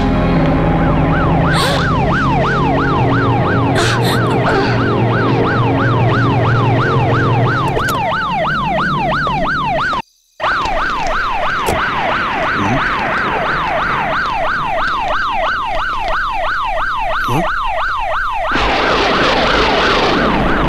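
Police siren on a fast yelp, its pitch sweeping up and down about three times a second. It cuts out for a moment about halfway and starts again. Near the end it gives way to a loud rushing noise.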